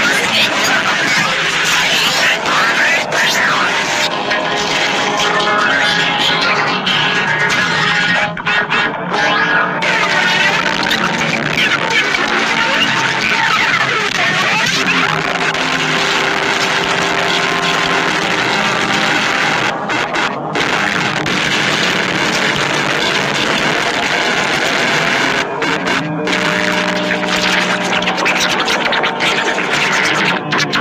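Loud, dense cacophony of many overlaid music tracks playing at once, heavily layered into a continuous jumble.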